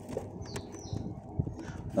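A few light knocks and rustles of cardboard firework boxes being handled and set down.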